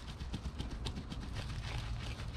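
A steel T-post being rocked quickly back and forth in damp ground to work it loose: a run of quick, irregular clicks and scuffs over a low steady rumble.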